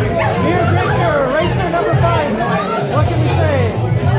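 Several people talking over each other close to a handheld microphone, with music playing in the background.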